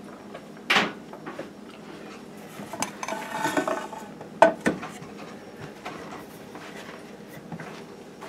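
The open metal chassis of a Yaesu FRG-7 shortwave receiver being turned over on a counter: several sharp metallic knocks and a scrape, the loudest knock about four and a half seconds in.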